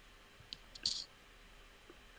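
Two faint clicks from someone working a computer. The first is short, about half a second in; the second is slightly longer and comes just under a second in. The rest is quiet room tone.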